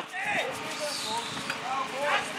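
A single horse pulling a marathon carriage on grass: dull thuds of hooves and carriage under faint calling voices.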